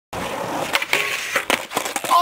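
Skateboard wheels rolling over rough asphalt, with several sharp clacks and knocks from the board.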